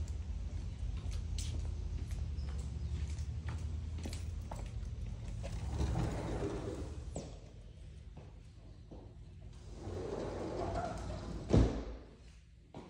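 A sliding glass patio door being slid open and then shut, with a sharp thud near the end as it closes, amid scattered footsteps and handling knocks.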